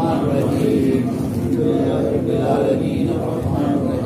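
A group of men chanting an Islamic devotional recitation together, many voices continuous and overlapping.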